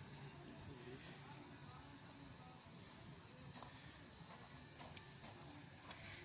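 Near silence: faint outdoor background with a few soft clicks, about midway and near the end.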